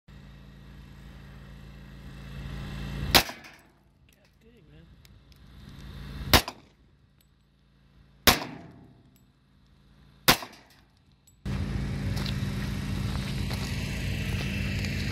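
Four pistol shots from a semi-automatic handgun, the first two about three seconds apart and the last three about two seconds apart, each with a short echo. Near the end a steady rushing noise starts.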